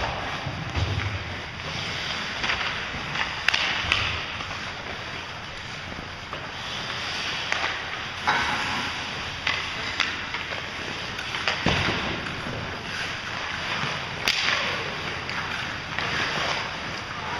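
Ice hockey play: skate blades scraping and carving the ice in repeated swishes, with several sharp cracks of sticks and puck.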